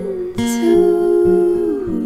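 A woman's voice singing a long wordless held note over acoustic guitar, the note sliding down near the end.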